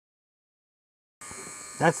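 Dead silence for about the first second, then a steady faint hiss with a thin high whine, and a man starts talking near the end.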